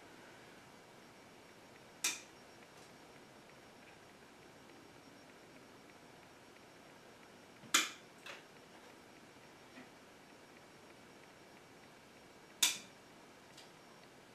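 Bonsai concave cutters snipping small Japanese maple twigs: three sharp snips about five seconds apart, each followed by a fainter click of the blades.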